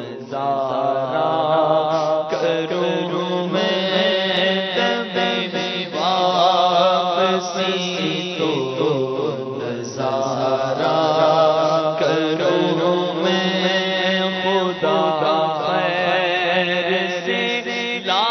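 A man's voice sings an Urdu naat without instruments, holding long, wavering, ornamented notes in phrases a few seconds long over a steady low drone.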